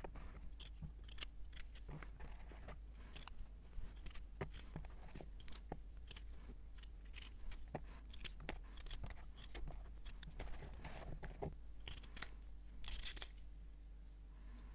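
Kitchen knife cutting small raw unpeeled potatoes into pieces in the hand, a run of irregular short clicks as the blade goes through and the pieces drop into a plastic bowl.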